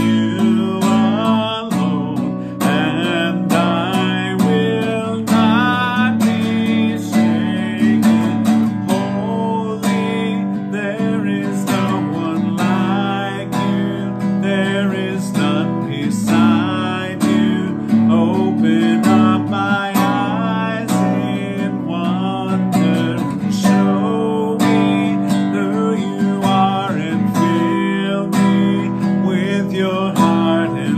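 Nylon-string classical guitar strummed in a steady rhythm, playing chords in the key of D, with a man singing along.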